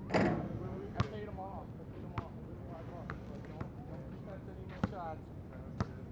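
A basketball bouncing on an outdoor asphalt court: a louder thump right at the start, then single sharp bounces at uneven gaps of one to a few seconds, with players' voices in the background.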